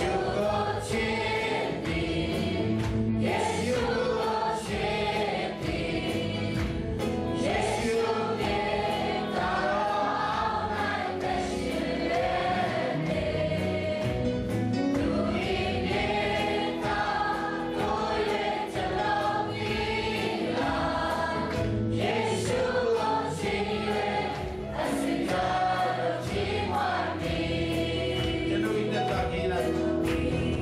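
Christian worship song sung by two women and a man into microphones over a PA, with many voices singing along, on top of a band with a steady beat.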